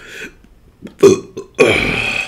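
A man belching: a short belch about a second in, then a longer one near the end.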